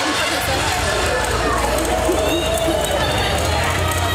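Many people's voices talking at once in a noisy crowd, with no single clear speaker, over a steady low hum.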